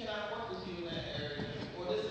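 A man preaching, his voice speaking without a break.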